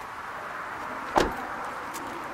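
A Vauxhall Corsa car door being shut once, a single solid thud about a second in, with a faint click just before the end.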